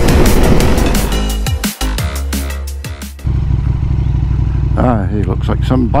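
Drum-and-bass music with a fast beat that stops abruptly about three seconds in. A motorcycle engine then idles steadily, with a man's voice over it near the end.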